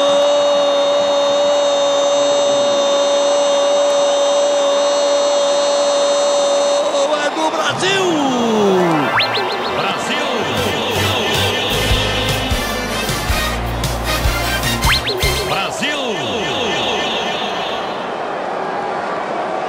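A TV commentator's long goal cry, 'gol', held on one high note for about seven seconds and then dropping away. Music follows.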